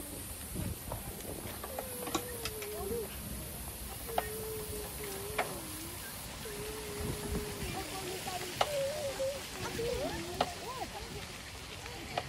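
A person humming a slow wandering tune in long drawn-out notes with short pauses between them, over the low rumble and occasional clicks of a bicycle rolling over paving.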